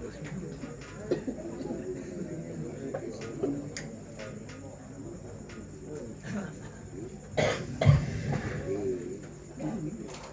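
Faint murmur of voices in a hall, then about seven and a half seconds in a cough or throat-clearing comes loudly through the microphone, just as the reciter readies to begin.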